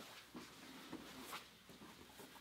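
Near silence, with a couple of faint, soft rustles as bodies shift on a grappling mat.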